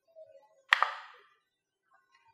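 A single sharp click about three quarters of a second in, with a short ringing tail.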